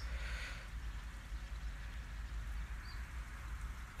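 Quiet outdoor ambience with a steady low rumble, and one brief faint high chirp about three seconds in.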